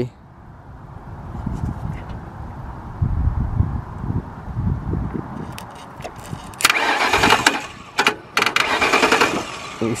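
2008 Ford Crown Victoria Police Interceptor's starter turning the 4.6 L V8 over by itself the moment the battery cable is connected, with no key in the ignition. It begins as a low rumble and gets much louder about two-thirds of the way through. The self-cranking comes from a stuck remote-start module.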